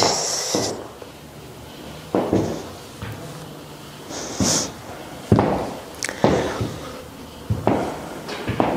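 High heels of knee-high leather boots tapping on a hard studio floor as the wearer shifts and turns: about six separate clicks, two of them in quick succession past the middle.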